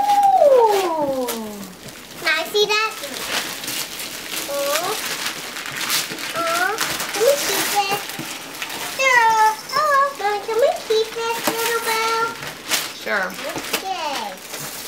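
High-pitched wordless voices of a baby and young children, starting with one long falling vocal sound and then short squeals and babble, with wrapping paper rustling as presents are handled.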